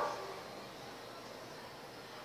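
Faint steady background hiss, with the last of a short loud sound cut off right at the start.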